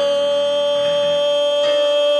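A male singer holding one long, high, steady sung note, reached by a short slide down just before, with piano accompaniment beneath whose chord changes about one and a half seconds in.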